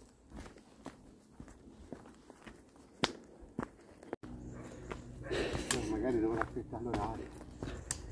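Faint footsteps walking on a trail, a series of soft steps with a couple of sharper ones. In the second half faint, distant voices talk.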